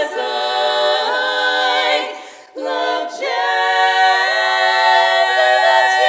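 Four women singing a cappella in close four-part barbershop harmony, holding chords. The sound breaks off briefly about two and a half seconds in, then resumes with a long sustained chord.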